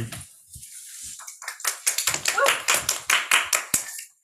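A quick, irregular run of sharp taps and knocks, several a second, starting about one and a half seconds in and continuing to the end.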